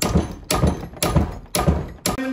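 Hammer blows on the heated end of a cast-iron curtain pole clamped in a bench vise, bending it over: about four dull strikes roughly half a second apart.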